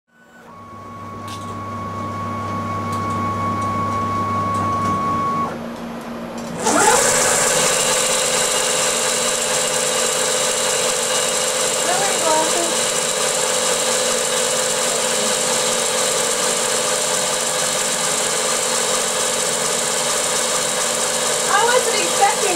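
Servo motor and belt drive of a scratch-built 4th-axis indexer on an X2 mini mill, in spindle mode for turning. It spins up with a rising whine about six seconds in, then runs steadily at speed. Before that there is a steady hum with a held tone that stops about five seconds in.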